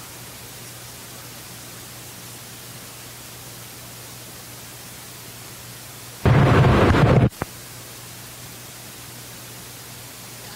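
Steady hiss and low hum from a microphone feed; about six seconds in, a loud burst of rumbling noise lasting about a second starts and cuts off suddenly, followed by a single click, typical of a microphone being handled.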